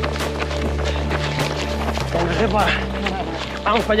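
Background music with steady low chords, over a runner's footfalls on a dirt trail, about three a second. Voices talk in the second half.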